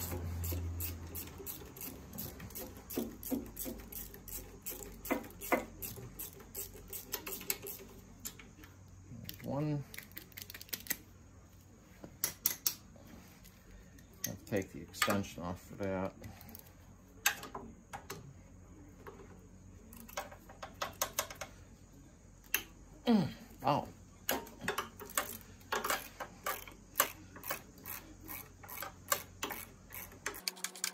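Socket ratchet clicking in quick runs as the 13 mm intake manifold bolts of a VW Beetle 1600 engine are worked loose, with the clack of the socket and tools being handled. A few short squeaky glides break in about ten seconds in, around fifteen seconds, and again past twenty seconds.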